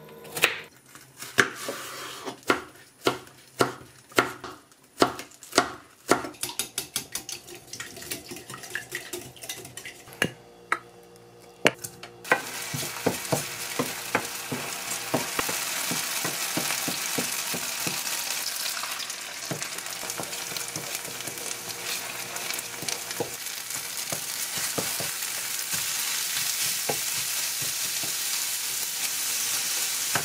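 A knife chopping carrots on a wooden cutting board, the chops coming faster after about six seconds. About twelve seconds in, oil starts sizzling in a frying pan as green onions go in, and the sizzle runs on under a wooden spatula scraping and tapping the pan as the egg, carrot, shrimp and rice are stir-fried.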